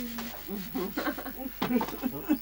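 People talking and laughing, with a voice holding a drawn-out vowel at the very start.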